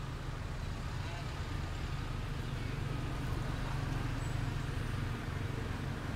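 Steady low outdoor background rumble with faint, distant voices mixed in.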